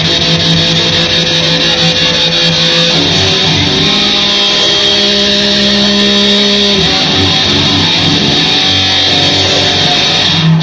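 Live instrumental metal: electric guitar playing long held notes over drums, loud and steady.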